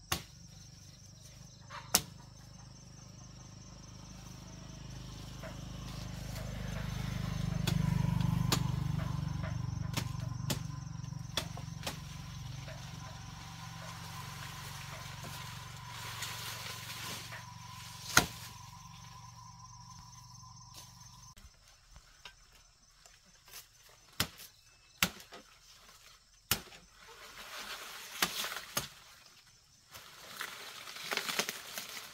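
Sharp, scattered knocks of a blade striking sugarcane stalks, several in quick succession near the end, over a low steady drone that swells and then stops abruptly about two-thirds of the way through.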